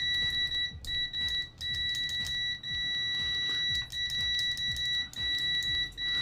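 Peakmeter PM18C multimeter's continuity beeper giving a loud, steady high-pitched beep as its stock probe tips are shorted together, broken by a few brief dropouts. The tone signals a closed circuit.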